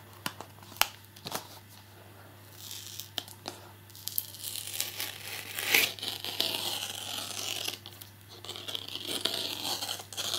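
A sticky retail security-seal sticker being peeled off a cardboard box: a few sharp clicks at first, then a rising rasp of tearing glue and crinkling plastic from about two and a half seconds in, loudest around the middle. The glue is tearing at the box's printed surface as it comes away.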